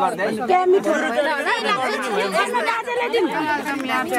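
Several people talking over one another: steady overlapping chatter of a small group.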